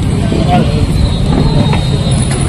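A loud, steady low rumble with faint voices in the background.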